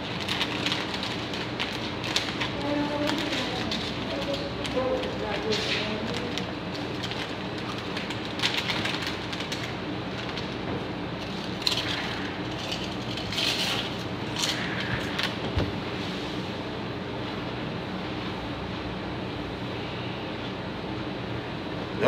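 Steady low room hum with faint voices in the first few seconds, and scattered rustling and clicks from people eating at a table, with a snack bag being handled.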